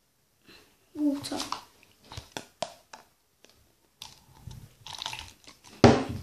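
Clear plastic cups being handled: several sharp clicks and crinkly scuffling, with one loud knock near the end. A short vocal sound comes about a second in.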